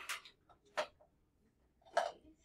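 A few short, irregular ticks or taps, about three in two seconds, in an otherwise quiet room.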